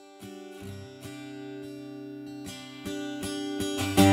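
Acoustic guitar playing a song's opening, strummed and picked softly at first and growing louder in steps, with a hard strum right at the end.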